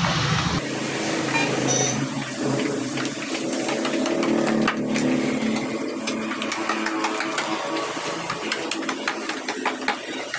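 Wooden mallet repeatedly tapping a carving chisel into a wooden door panel, light irregular strikes with the chisel cutting the wood, over a steady mechanical hum that is strongest in the first half.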